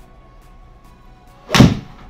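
A golf iron strikes a ball off the hitting mat, with the ball hitting the simulator's impact screen almost at once. It comes as one sharp, loud thud about one and a half seconds in.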